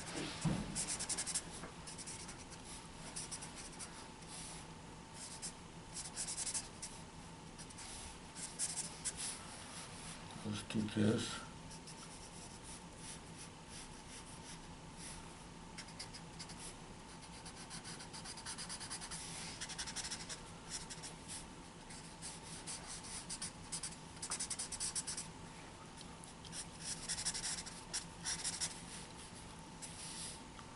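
Black felt-tip marker scratching across a large paper pad in short, quick strokes, in repeated clusters as areas are filled in solid black. A brief voice sound comes about eleven seconds in, over a faint steady room hum.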